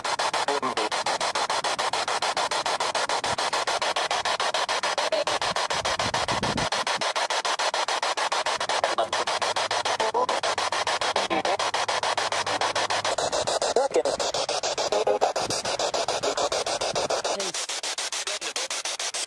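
Spirit box (ghost box) radio scanning through stations: continuous static chopped into rapid pulses, with brief garbled snatches of voice that are captioned as "I'm Michael" and "Is Glenda there" and taken for spirit replies.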